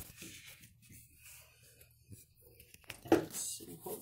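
Faint scraping and handling of a cast-iron transaxle case half as it is worked down over the input shaft. About three seconds in there is a single sharp knock as the case half drops into place.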